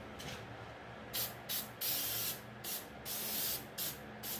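Aerosol can of temporary spray adhesive sprayed in about six short hissing bursts, starting about a second in.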